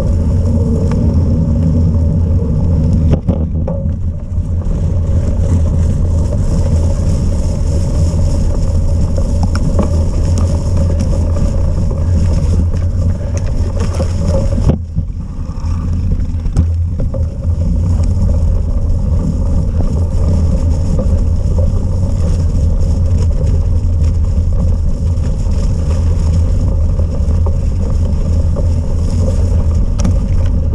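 Steady low rumble of wind buffeting a bike-mounted action camera's microphone, mixed with tyre noise from a cyclocross bike riding a muddy trail, briefly dipping about 3 and 15 seconds in.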